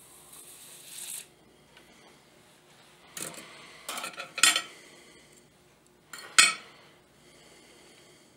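Small metal jeweler's tools clinking against the bench: a few sharp clicks and clatters from about three to four and a half seconds in, then one loud clink just past six seconds, as tweezers are set down and the freshly soldered ring is handled. A short soft hiss comes in the first second.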